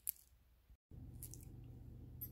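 A quiet pause: one brief faint click right at the start, then a low steady hum, broken by a split-second dropout just under a second in.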